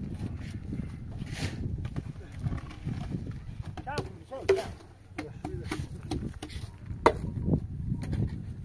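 A person's voice over a low outdoor rumble, with scattered knocks from block-laying work as a mortar bucket is handled on a cement-block wall; the sharpest knock comes about seven seconds in.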